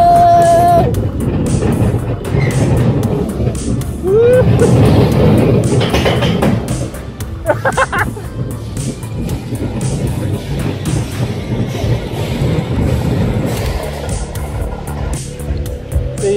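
Small steel roller coaster car running along its track, the ride's rumble mixed with loud fairground music; a high held note sounds right at the start and a short rising cry about four seconds in.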